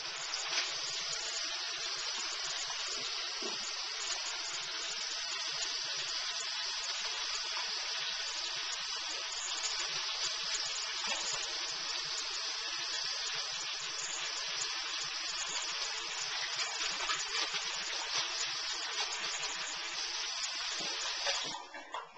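Bathroom sink tap running steadily while hands are washed under the stream; the flow stops abruptly near the end as the tap is shut off.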